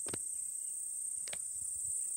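A steady, high-pitched chorus of field insects chirring without a break.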